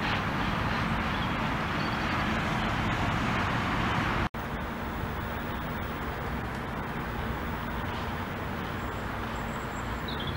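Steady distant road traffic noise, with a momentary drop-out about four seconds in where the footage is cut, then a little quieter. A faint high chirp comes near the end.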